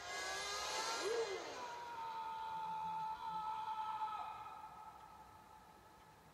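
Action-film soundtrack heard through a monitor's speakers, recorded off the screen: held whining tones with sliding pitches, one tone dropping a little about four seconds in, all fading down toward the end.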